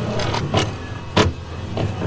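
Videotape player mechanism sound effect: a motor whirring steadily with mechanical clicks, the sharpest about a second in.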